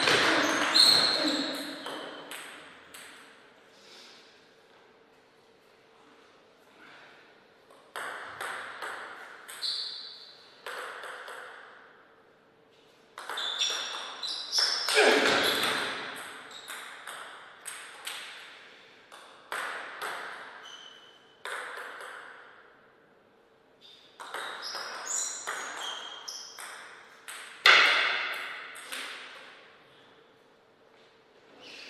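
Table tennis rallies: the ball clicking sharply off the bats and the table in quick runs of hits. There are four bursts of play, with short pauses between points.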